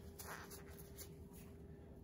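Faint paper-towel rustling and light handling clicks as a bronze block plane is wiped and turned in the hands, over a low steady hum.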